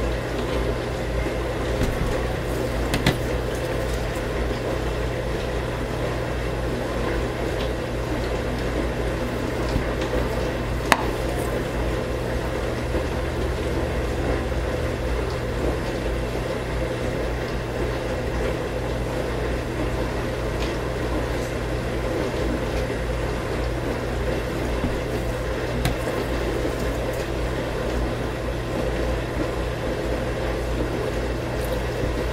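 Raw soap batter pouring in a thin stream from a plastic jug into a plastic soap mould, over a steady background hum. A few small clicks, the sharpest about eleven seconds in.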